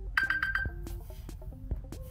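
iPhone alarm going off: the alarm ringtone plays a tune of short notes through the phone's speaker, opening with a quick run of high notes.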